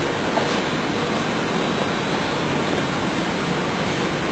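A steady, even rushing noise with nothing standing out above it.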